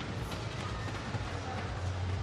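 Steady indoor swimming-arena ambience during a race: an even wash of crowd noise and splashing from the pool.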